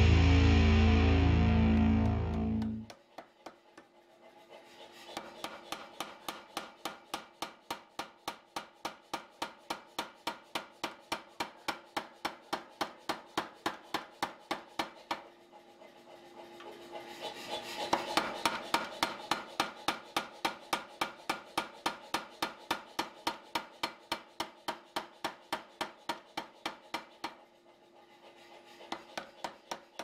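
Background music stops about three seconds in. Then a mechanical power hammer strikes a hot Damascus steel billet at a steady pace of about three blows a second, over a steady motor hum. The blows pause briefly twice and grow louder for a few seconds around the middle.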